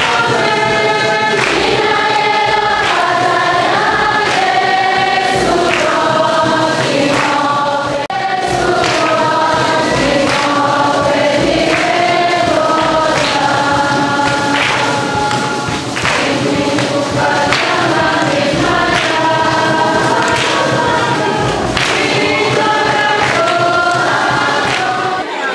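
A choir of schoolchildren singing a hymn together, with hand claps keeping the beat.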